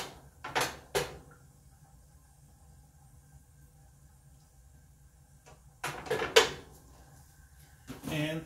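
Short knocks and clatters of kitchen handling: three in the first second and a louder cluster about six seconds in. A faint steady hum runs between them.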